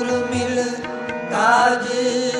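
Sikh kirtan: harmonium holding steady chords over soft tabla strokes, with a male voice singing in strongly about a second and a half in.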